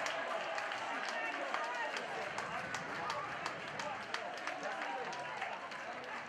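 Football stadium crowd: many sharp, irregular hand claps over a mass of voices shouting and calling.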